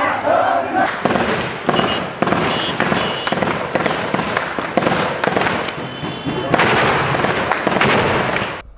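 Repeated gunshots in quick succession, from about a second in, after a moment of crowd voices.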